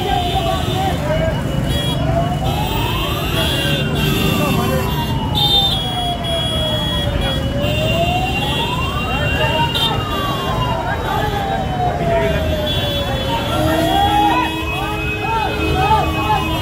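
A fire engine's siren wailing, rising over about two seconds and falling over about four, cycle after cycle, over street traffic noise and shouting voices.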